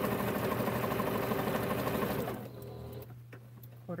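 Electric sewing machine stitching a quarter-inch seam through two layers of quilting cotton at a steady, fast pace, stopping a little over two seconds in. A few faint clicks follow.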